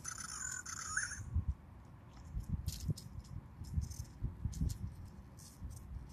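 Gloved hands handling a plastic toy dinosaur figure: soft knocks and rustles with scattered light clicks, after a brief high chirping sound in the first second.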